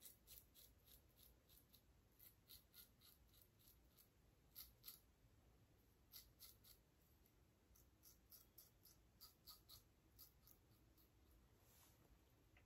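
Very faint, short scratchy strokes of a Mühle Rocca double-edge safety razor cutting stubble through lather, coming in runs with small gaps, two slightly louder strokes near the middle.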